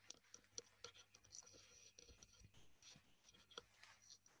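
Near silence: faint room tone with scattered soft clicks and scratchy ticks over a low hum.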